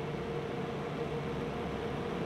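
Steady hum and hiss of a running vehicle or machine, with a faint held tone over it.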